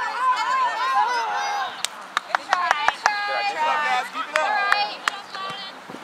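Players and spectators shouting during youth soccer play, some of the calls drawn out. A run of sharp knocks, the ball being kicked on artificial turf, comes through the middle seconds and again near the end.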